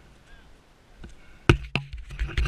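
A hand handling the helmet-mounted camera: two sharp knocks near the end, about a quarter second apart.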